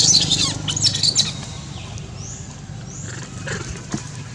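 Baby long-tailed macaque squealing shrilly in the first second or so, then two short rising squeaks about two and three seconds in.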